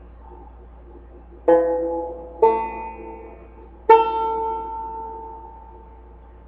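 Banjo: three chords struck about 1.5, 2.4 and 3.9 seconds in, each ringing and decaying, the last one ringing out longest and fading slowly.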